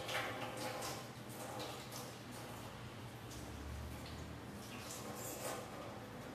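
Faint, irregular small splashes and clicks of hands being washed at a sink out of view.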